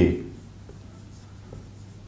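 A marker writing faintly on a whiteboard. The tail of a man's spoken word is heard at the very start.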